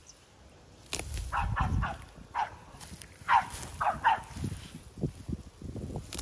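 A series of short animal calls, about seven in quick succession, starting about a second in, over rumbling and rustling noise.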